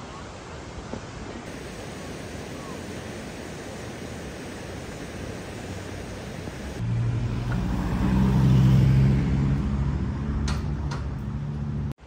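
Steady outdoor background noise, then a motor vehicle's low engine hum comes in suddenly about seven seconds in, swells to its loudest around nine seconds and eases off. Two sharp clicks come near the end.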